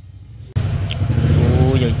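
Small single-cylinder four-stroke engine of a Honda underbone motorcycle running steadily at idle, coming in suddenly about half a second in.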